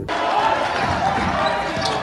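Live sound of a basketball game in a gym: crowd voices with a basketball bouncing on the court.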